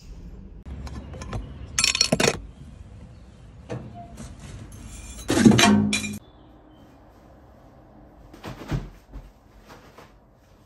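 Glass clinking and crashing as waste is dropped through the brush-lined slot of a recycling container. The loudest crash comes about five and a half seconds in, with a shorter clatter about two seconds in and a smaller one near the end.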